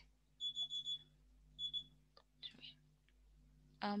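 A timing alarm beeps in a high steady tone: a beep of about a second, then a shorter one a second later. It signals that the speaker's time is up.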